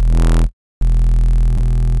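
Low, heavily distorted synth bass note from the Vital synthesizer, held with a buzzy, gritty tone. It cuts out for about a quarter second near the half-second mark, then sounds again, bright and full of harmonics, as the distortion mode is switched from hard clip to linear fold.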